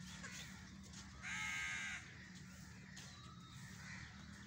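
A crow cawing once, a single harsh call of well under a second about a second in. Fainter chirps of smaller birds sound around it.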